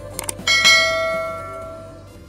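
Two quick clicks, then a bright bell chime that rings out and slowly fades: a subscribe-button click and notification-bell sound effect.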